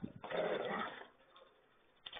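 German shepherds growling at each other in play: one short, rough growl lasting under a second, heard thin through a security camera's microphone.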